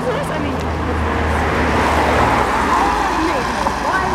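Steady engine and tyre noise of a moving car, heard from inside the cabin, with faint voices talking under it.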